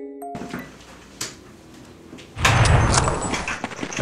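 A chiming music-box-like tune ends near the start. A few faint clicks follow, then about two and a half seconds in a sudden loud burst of video game sound effects, gunfire-like noise, starts from a laptop game.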